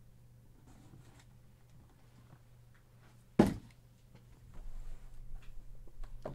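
Cardboard hobby boxes being handled on a table: a single sharp thump a little past halfway, then a light rustling and shuffling of the boxes being shifted, over a faint steady hum.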